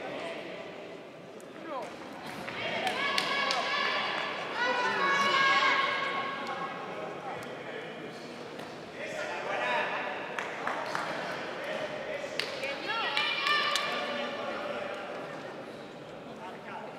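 Shouting voices from the ringside during a kickboxing bout, coming in bursts, mixed with scattered thuds and slaps from the fighters' gloved blows and feet on the ring canvas.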